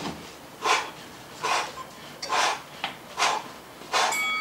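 A person breathing out hard in rhythm during fast cardio exercise: four short, forceful exhalations about a second apart, with faint clicks between them.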